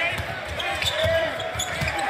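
A basketball being dribbled on a hardwood arena court, several bounces about half a second apart, over the murmur of the arena crowd.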